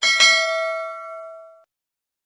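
A notification-bell chime sound effect: a bright bell is struck twice in quick succession and rings with several clear tones, fading before it cuts off suddenly about a second and a half in.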